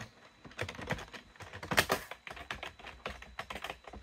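Typing on a computer keyboard: an irregular run of quick key clicks as a ping command is entered into a terminal.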